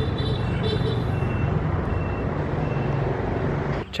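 A motor vehicle engine running steadily, a low hum with a noisy rumble, cutting off suddenly just before the end.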